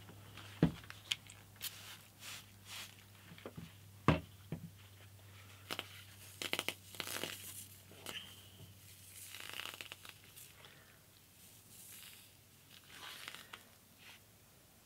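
A thin walnut guitar side being worked by gloved hands over a hot bending iron: scattered scraping, rustling and crackling as the wood is pressed and slid against the iron, with sharp knocks where the side clanks against the iron, the loudest about a second in and about four seconds in. A low steady hum runs underneath.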